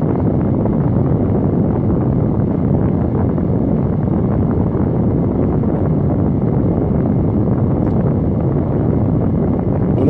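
Steady, low rushing noise inside a car cabin, unbroken and with no voice over it.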